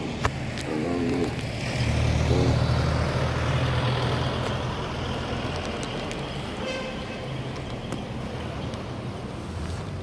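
Road traffic: a car's engine passing close by, loudest about two seconds in and fading slowly after.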